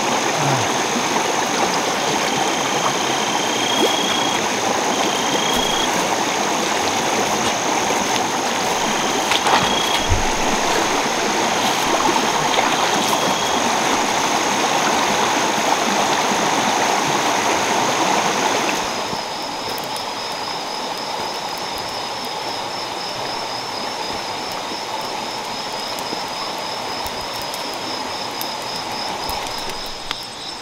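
Night-time forest insect chorus: a steady high-pitched buzz over a constant rushing hiss, with a few short chirps in the first half. About two-thirds through, the sound drops a little and turns into a quieter, pulsing high trill.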